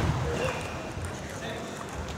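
A dull, low thump right at the start, then a steady background murmur of voices echoing in a large sports hall.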